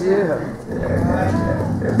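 A low, drawn-out vocal sound, like a long hum, sustained for about a second and a half with its pitch slowly rising and falling. It is a voice picked up in a church, in the gap between spoken phrases.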